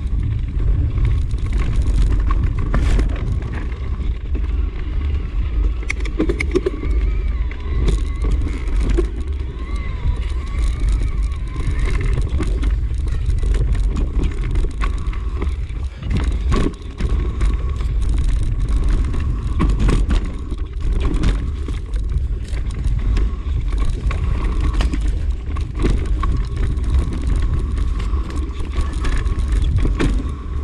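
Mountain bike descending fast on a rough dirt forest trail: heavy wind rumble on the microphone, tyre noise on the dirt, and frequent knocks and rattles as the bike runs over roots and rocks.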